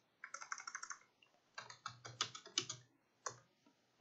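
Computer keyboard typing: two quick runs of faint keystrokes, then a single keystroke a little after three seconds in.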